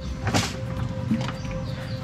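A sharp metal click about half a second in, then a few lighter clicks, as the metal drive-leg control rod is worked loose from its linkage on a saildrive leg.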